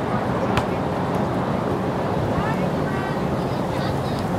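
Steady wind noise on the microphone, with faint distant voices of players and spectators, and one sharp tap about half a second in.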